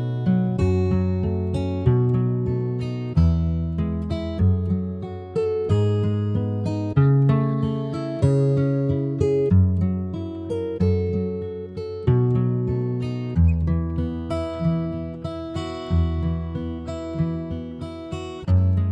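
Instrumental music on acoustic guitar: plucked chords and notes about once a second, each ringing out and fading before the next.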